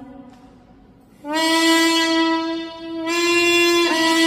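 Piri, the Korean double-reed bamboo pipe, playing a slow solo: a held note dies away, a gap of about a second, then a loud, reedy long-held note enters and is sustained, swelling slightly just after its midpoint.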